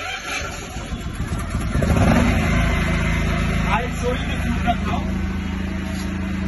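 A 7 kW Bajaj portable petrol generator starting: its engine builds up over the first two seconds, then settles into a steady, even run.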